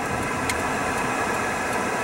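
Steady road and engine noise inside a moving car's cabin, with one faint click about half a second in.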